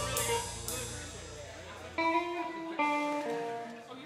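Live instrumental music from a guitar, bass and drum trio: the full band thins out and the low end drops away, leaving a few single electric guitar notes ringing in the second half.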